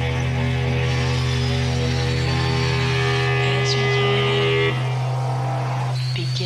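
A sustained droning chord from an electric guitar run through effects pedals, with a steady low amplifier hum beneath it. About three-quarters of the way through, the held notes and the deepest part of the drone drop away.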